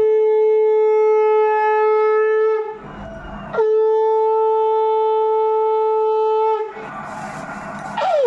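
Conch shell (shankha) blown in long, steady, single-pitched blasts with short breaks between, sounded to mark an auspicious moment of a Hindu home ritual. The last blast starts with a slight downward slide in pitch.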